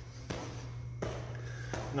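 Bare feet landing on gym mats during non-stop kicks, three thuds about 0.7 s apart, over a steady low hum.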